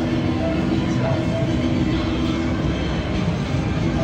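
Steady casino-floor noise with a low, even drone and a few short electronic blips, as a video keno machine draws its numbers.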